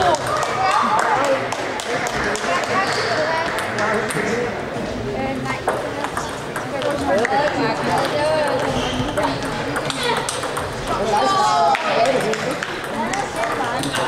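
Table tennis balls clicking off bats and tables, in short irregular runs of quick clicks, over the chatter of voices in a busy hall.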